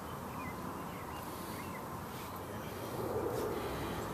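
Steady outdoor background noise with no clear handling sounds, with a few faint high chirps in the first couple of seconds. A low rumble swells a little about three seconds in.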